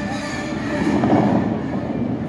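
Water jets of the Bellagio fountain show shooting up and crashing back onto the lake: a rushing, rumbling wash of water that swells about a second in, with the show's music faint beneath it.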